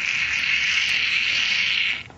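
A child making a long, steady hissing sound, playing an angry creature; the hiss cuts off suddenly.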